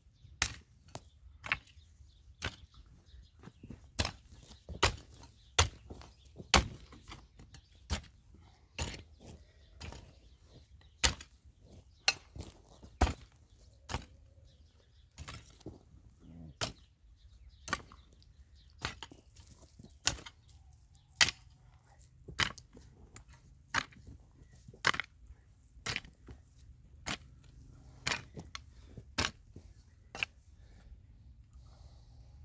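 Hand hoe striking and dragging dry, stony soil in a steady rhythm, a sharp strike roughly every second, as soil is pulled over a trench of planted cuttings.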